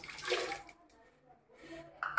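Wet soaked oats poured from a bowl into a mixer jar, a short splashing pour in the first half-second or so.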